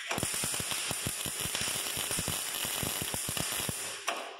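Wire-feed welder arc welding steel tubing: a steady, dense, irregular crackle that cuts off near the end.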